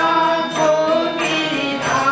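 A woman singing a devotional song into a microphone, accompanied by a harmonium's held tones and tabla.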